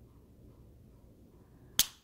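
Cosentyx Sensoready autoinjector pen giving one sharp click near the end: the pop that signals the medicine has been fully delivered.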